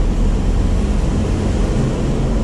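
Vehicle engine and tyre noise heard from inside the cabin while driving slowly through a rock tunnel: a steady low rumble with an even engine drone.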